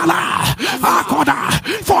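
A preacher's loud voice calling out in rising and falling tones, with no clear words.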